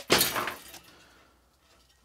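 A metal servo assembly clattering and scraping as it comes loose from the X-ray scanner's metal frame. It is a short burst that fades out within about the first second.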